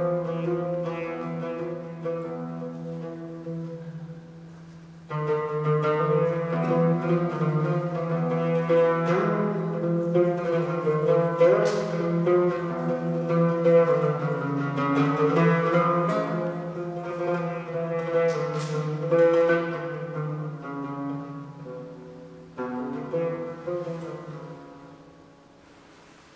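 Byzantine chant in the Saba mode: men's voices singing long-held melodic phrases over a steady low drone, with an oud. One phrase dies away and a new one enters about five seconds in, another about twenty-two seconds in, and the sound fades near the end.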